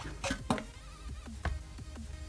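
MacBook laptop lid being closed: a few sharp knocks, the loudest about half a second in and another about a second and a half in, over electronic background music.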